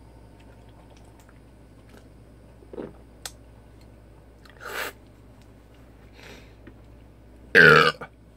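A man burps once, loud and short, near the end with a falling pitch, after gulping from a can of beer. A couple of quieter throat and breath noises come before it.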